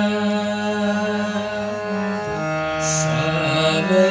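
Harmonium accompanying two young voices, a girl and a boy, singing a Kajri, a semi-classical Hindustani monsoon song, in long held notes, without tabla.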